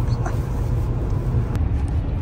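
Steady low rumble of a Toyota's road and engine noise, heard from inside the cabin at highway speed.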